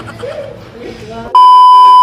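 A loud, steady, high-pitched test-tone beep, the kind that goes with a TV colour-bar test pattern. It is added as an editing sound effect and starts abruptly about a second and a half in.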